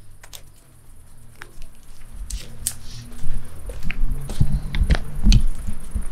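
Handling noise: a fleece bathrobe sleeve rubbing against the phone's microphone, a low rumble with scattered small clicks, growing louder about two seconds in.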